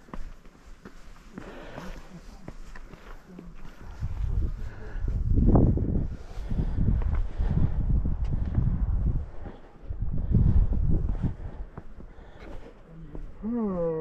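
Wind buffeting the camera microphone: a gusty low rumble that builds about four seconds in and dies away about three seconds before the end. A short voice is heard at the end.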